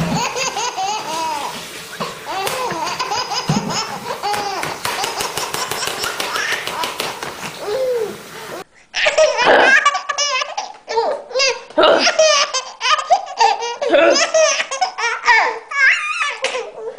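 Babies laughing hard: first a long run of giggling belly laughs, then about two-thirds of the way in a sudden change to another baby's louder, choppier bursts of laughter.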